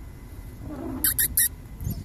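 A raccoon dabbling in a shallow street puddle: three quick hissy sounds follow each other about a second in, over a low rumble of wind on the microphone.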